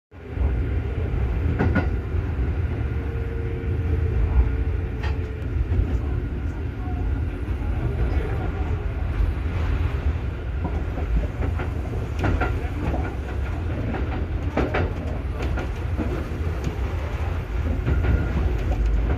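Electric train running, heard from inside its front deck: a steady low rumble with occasional sharp clacks as the wheels run over rail joints and points, several bunched about two-thirds of the way through.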